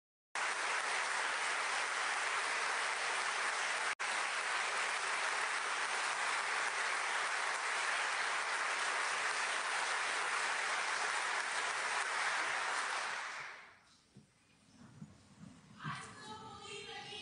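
A large audience applauding steadily, the clapping fading away near the end.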